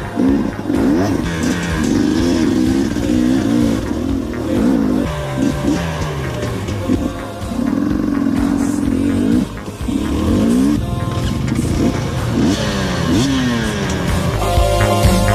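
Enduro motorcycle engine revving hard, its pitch repeatedly rising and falling as the throttle is worked on a climb, with background music underneath.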